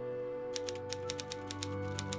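Typing sound effect: rapid, uneven key clicks that start about half a second in, keeping time with on-screen text being typed out, over sustained background music.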